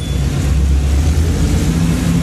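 Chevrolet 350 small-block V8 of a 1979 Jeep CJ-5 running steadily, a low drone, as the Jeep crawls through a shallow creek.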